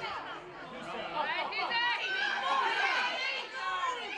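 Many high-pitched girls' voices shouting and calling out over one another, from players and spectators during a girls' football match. No single word stands out.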